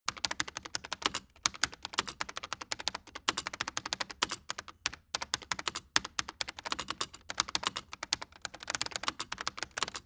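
Computer keyboard typing: rapid key clicks in quick runs, with a few short pauses.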